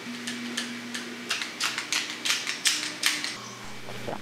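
An irregular run of sharp clicks and taps, about a dozen of them, some in quick pairs, with a faint low hum under the first second.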